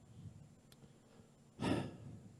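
A man's short sigh or sharp breath out close to a headset microphone, about a second and a half in, against quiet room tone.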